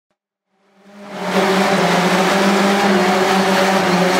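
Volvo saloon doing a burnout in a tunnel: the engine is held at steady revs while the rear tyres spin and squeal in a loud, even hiss. It fades in about a second in.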